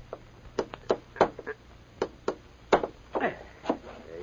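Hammer tapping a tack into a wooden bulletin board: about eight sharp knocks at an uneven pace, two or three a second. It is a radio-drama sound effect.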